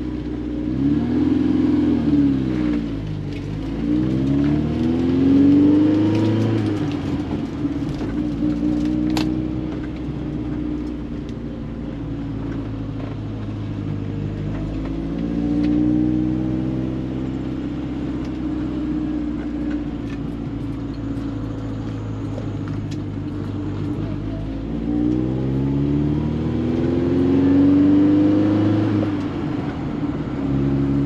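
1968 BMW 1600's 1.6-litre four-cylinder engine heard from inside the cabin while driving, pulling through the gears of its four-speed manual. Its pitch climbs and then drops at each gear change a few times, with steadier cruising stretches between.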